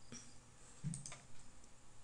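A few faint computer mouse button clicks.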